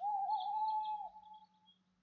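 A sound effect in the recorded picture story: a single wavering, squeaky tone lasting about a second, dropping away at the end.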